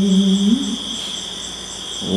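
A young male voice in Khmer smot chanting holds one long, steady note that ends with a short upward turn a little over half a second in. After it comes a pause in the chant, with only a steady high-pitched hiss.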